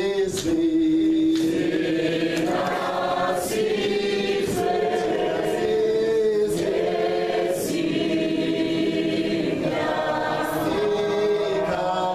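A standing crowd singing together in many voices, long held notes moving from phrase to phrase in a slow, anthem-like song.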